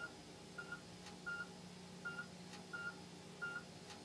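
Operating-room patient monitor beeping steadily, one short high beep about every 0.7 seconds, each beep marking a heartbeat, over a low steady hum.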